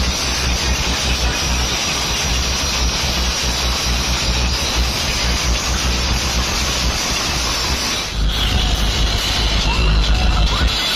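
A DJ sound system playing very loud, bass-heavy music, heard from within the crowd and so distorted that it comes through mostly as a dense, noisy wash over a strong deep bass. Just after eight seconds in there is a brief dip, and then the bass comes back heavier.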